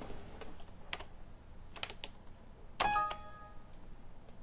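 A few sharp clicks at the computer, then near the end a short Windows alert chime of a few steady notes as a PowerPoint warning message box pops up.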